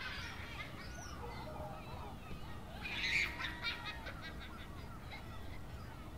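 Birds calling over outdoor ambience, with a louder run of quick repeated calls about three seconds in.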